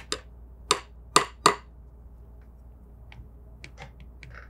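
A handful of short, sharp clicks and taps: four or five louder ones within the first second and a half, then a few fainter ones near the end.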